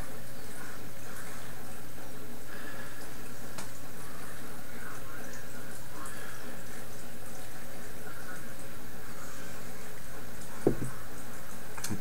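A man sniffing at a glass of dark beer: faint short sniffs over a steady background hiss with a low hum. A single short knock comes near the end as the glass is set down.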